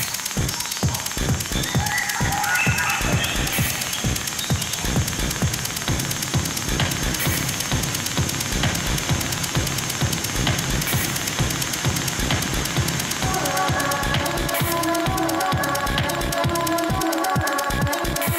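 Dark techno: a steady four-on-the-floor kick drum under dense, noisy synth textures. A pulsing, repeating synth riff comes in about two-thirds of the way through.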